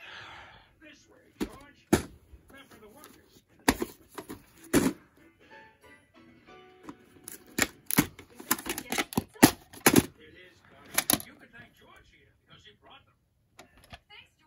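Plastic VHS clamshell case being handled, opened and snapped shut: a series of sharp clicks and knocks, thickest in the second half.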